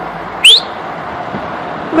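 A single brief, loud rising whistle about half a second in, over steady street background noise.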